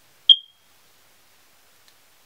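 A single sharp click with a brief high ring about a third of a second in, and a faint tick near the end.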